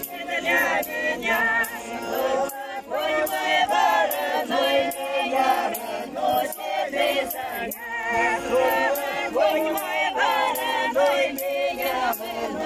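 A folk choir of mostly women's voices singing a Russian folk song together, with accordion accompaniment and sharp taps keeping a regular beat.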